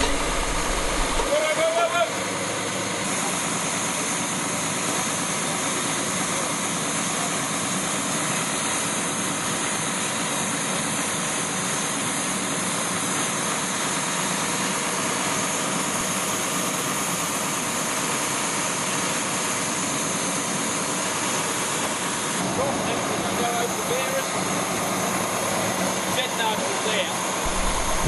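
Crane truck's engine running steadily, as a continuous even noise, with faint voices now and then.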